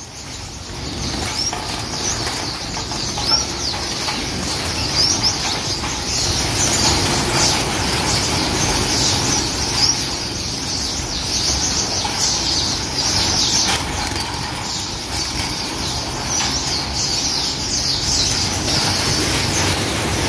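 A large flock of caged finches, many of them Gouldian finches, fluttering and calling: a steady rustle of wings under a dense chatter of short, high chirps.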